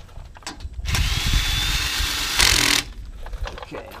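Cordless drill with a socket in a quick chuck running for about two seconds, spinning a lug nut onto a wheel stud. A faint steady whine sits over the motor noise, and it gets louder for a moment just before it stops.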